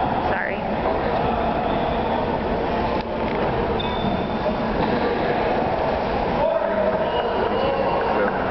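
Steady background chatter of many voices echoing in a large gymnasium, with no single voice standing out.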